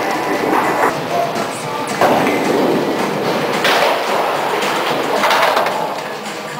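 Bowling ball rolling down a wooden lane with a rumble, amid the din of a bowling alley, with a sudden louder knock about two seconds in.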